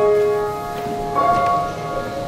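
Piano playing slow, ringing chords, with a new chord struck a little over a second in.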